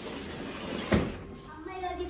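A cardboard produce box set down on a stone floor: one sharp thud about a second in.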